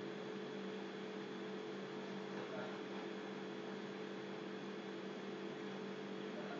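Steady electrical hum with a constant hiss underneath, unchanging throughout.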